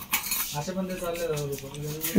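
Gold-plated metal bangles clinking and knocking against each other as they are handled, with a short sharp clink near the start. A voice is heard faintly in the background.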